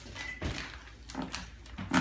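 A knife cutting through the packing tape on a cardboard box, with a few short knocks and scrapes against the cardboard.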